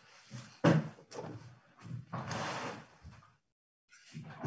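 A sharp knock about half a second in, followed by rustling and shuffling noises, with the sound cutting in and out abruptly.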